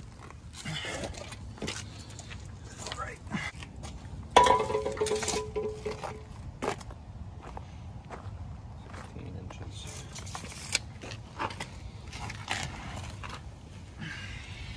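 Scattered clicks, knocks and rattles of tools being handled and a plastic power-tool case being rummaged through, with no saw running.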